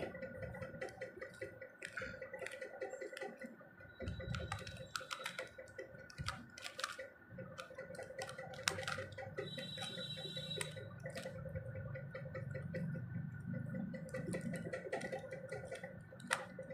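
Plastic windmill cube being turned by hand, its pieces clicking and clacking irregularly with each turn, over a faint steady hum.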